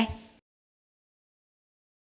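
The last syllable of a woman's narration fades out in the first half second, followed by complete digital silence with no room tone at all.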